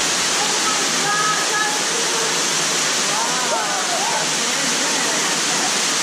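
Steady rush of river water flowing through a narrow rock canyon, with faint voices calling in the distance.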